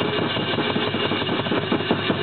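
Drum kit bashed hard and fast: a rapid, even run of drum hits under a continuous cymbal wash.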